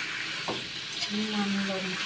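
Squid sizzling in hot oil as it is stir-fried in a wok, with a couple of clicks from the metal utensil against the pan about half a second and one second in.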